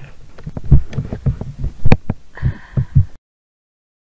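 Irregular low thumps and knocks, about four a second, close to the microphone; the sound cuts off to silence about three seconds in.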